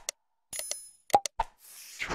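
Subscribe-button animation sound effects: short pops or clicks as the cursor presses the buttons, a brief bell ding about half a second in, two more pops about a second in, and a whoosh near the end.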